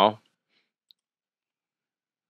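The end of a spoken word, then near silence with one faint click about a second in.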